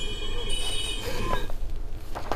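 Metal-on-metal squeal at a railway track: several steady high tones that fade out about a second in. Beneath it is background street noise with brief distant voices.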